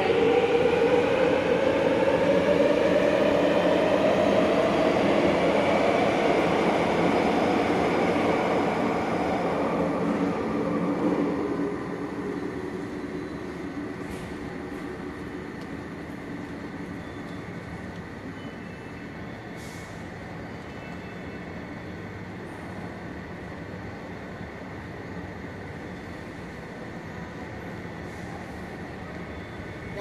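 Metro train pulling out of the station platform: its motor whine rises in pitch as it gathers speed, loud for the first ten seconds or so and then fading, leaving a steady station hum.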